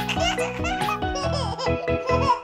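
A baby giggling, several short laughs, over a bouncy children's music backing.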